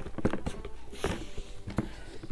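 Handling noise of a leather crossbody strap being clipped onto a handbag: a few small sharp clicks from its metal hardware, with brief rustles.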